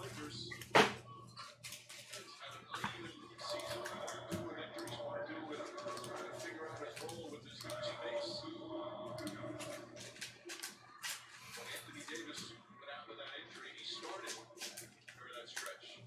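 Faint, muffled talking under scattered short clicks and rustles from handling cards and packs on the table, with one sharp knock about a second in.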